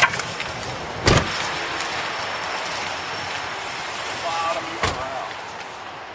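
Audio of a roadside police stop: steady background noise, a sharp, loud thump about a second in and a smaller one near five seconds, and a brief faint shout just before the second thump.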